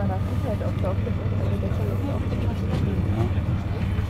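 Steady low rumble inside a passenger train carriage as it moves slowly along a station platform, with faint passenger voices over it.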